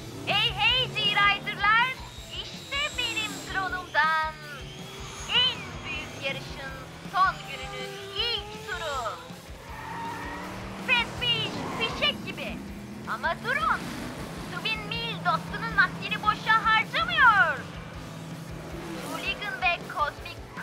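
Cartoon soundtrack: music with a voice singing or calling out over it, mixed with animated race-car engine sounds.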